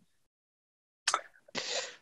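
A short mouth click followed by a brief breath of air, as a person draws breath before answering.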